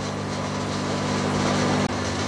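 Steady hum of aquarium pumps running, with the hiss of air bubbling through the tank water, and a brief click near the end.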